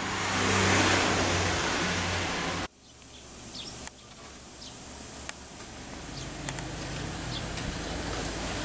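A motor vehicle engine running steadily, fairly loud, cutting off suddenly about three seconds in; after that a quieter engine hum slowly grows louder.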